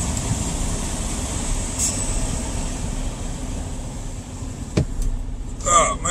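Freightliner Cascadia semi-truck's diesel engine running steadily at low speed as the truck creeps forward, with one sharp click a little before the end.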